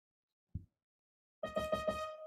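Near silence with one soft knock, then about a second and a half in an electronic keyboard starts playing: a few quick notes and a held note that rings on.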